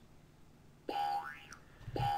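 A synthetic computer sound effect, a boing-like tone played twice about a second apart: each a short held note that glides up and back down in pitch. It sounds as a dictated voice macro pastes its text into the document.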